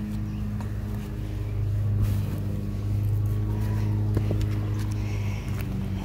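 Steady low mechanical hum, with a faint click or two in the second half.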